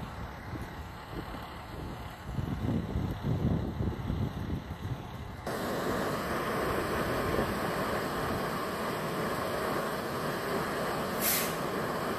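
Fire apparatus running at a scene, a steady diesel engine noise. In the first half it comes with low rumbling gusts; about halfway through the sound jumps to a louder, steady noise. A brief, sharp hiss sounds near the end.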